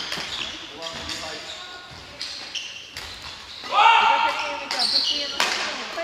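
Badminton rackets striking a shuttlecock, several sharp hits echoing in a large gym hall, with voices and a loud call about two-thirds of the way through.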